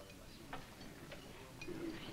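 Faint café background with a few light, separate clicks and ticks.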